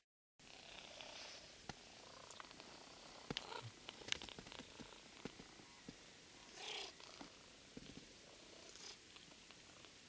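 A ginger-and-white domestic cat purring faintly close to the microphone while being petted, with scattered soft clicks and a brief rustle of fur against the hand.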